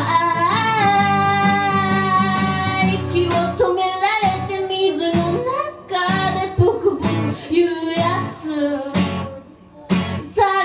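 A singer performing a song live to a strummed acoustic guitar. Voice and guitar break off briefly about nine seconds in, then come back in.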